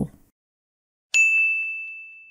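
A single bright ding about a second in: a bell-like chime struck once, ringing on one high tone and slowly fading away.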